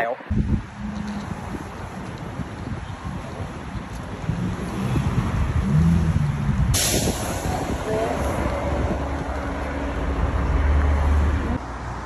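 City street traffic: a steady low engine rumble from passing vehicles. A sudden hiss starts about seven seconds in and continues for several seconds.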